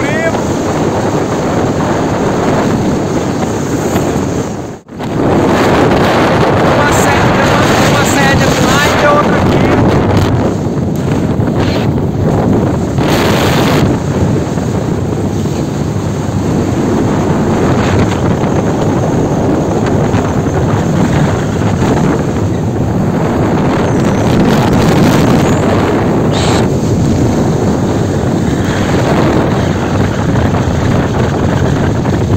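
Wind rushing loudly over the microphone while riding in the open on the back of a moving truck, with the vehicle's running and road noise beneath it. The sound drops out briefly about five seconds in.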